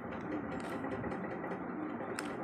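Plastic windmill cube being turned by hand, its layers giving a few soft clicks over a steady background hum.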